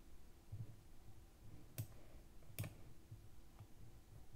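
Two sharp computer clicks less than a second apart, with a few faint low knocks around them, against near silence.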